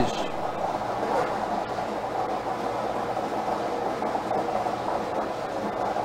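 Plastic bingo balls tumbling in a rotating clear acrylic bingo cage, a steady rattling that mixes the balls before the next draw.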